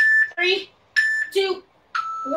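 Digital interval timer beeping at the end of a countdown: two short, steady high beeps about a second apart, then a different, lower tone starting right at the end as the next interval begins. A woman's short voiced sounds fall between the beeps.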